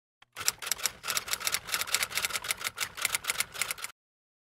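Typing sound effect: a quick, uneven run of typewriter-like key clicks, several a second. It starts about half a second in and cuts off abruptly near the end.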